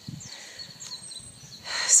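Quiet outdoor garden ambience with a few faint bird chirps during a pause in speech; a spoken word begins near the end.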